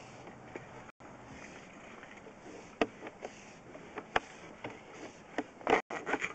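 Scattered sharp clicks and knocks over a steady faint hiss as a sewer inspection camera's push cable is pulled back through the pipe, the loudest knocks coming near the end. The sound cuts out briefly twice.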